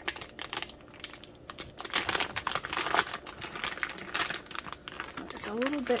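Clear plastic wrapping crinkling as a hand lifts a plastic-wrapped wax melt loaf out from among other plastic-bagged items, in irregular crackles that are loudest two to three seconds in.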